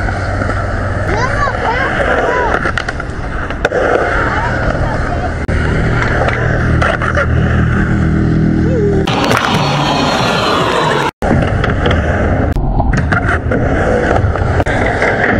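Skateboard wheels rolling on a concrete bowl, a low steady rumble that grows louder about halfway through, with people's voices in the background. About nine seconds in the sound changes abruptly to a steady hiss, and it cuts out for an instant a couple of seconds later.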